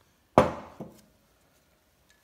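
A single heavy, sharp knock with a short ring, then a lighter knock about half a second later: metal Turbo 400 pump parts knocked or set down on the workbench.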